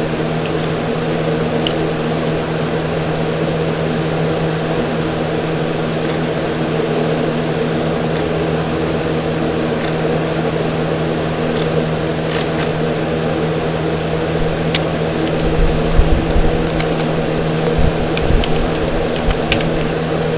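A steady mechanical hum at a constant pitch, with a few low thumps in the last few seconds.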